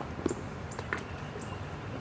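Carp feeding at the water surface: a few short, soft smacks and slurps as they suck down mulberries, over a steady low outdoor background.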